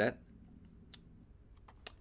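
A few faint computer keyboard keystrokes, unevenly spaced: one about a second in and a couple more near the end.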